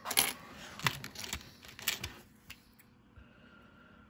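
Pennies clinking and clicking against one another and the table as they are sorted by hand, a run of sharp clicks over the first two and a half seconds.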